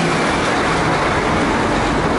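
Heavy Mercedes-Benz dump truck's diesel engine and tyres passing close by on a cobbled street, a loud steady noise with deep low end that swells a moment after the start.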